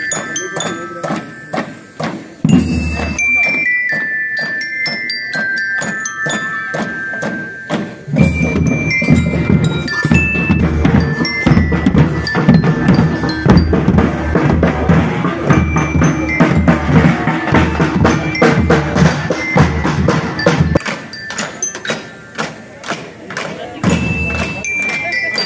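School marching band playing: bell lyres ring out a melody over snare and bass drums. The drums come in heavily about eight seconds in and drop back near the end, leaving mostly the bell notes.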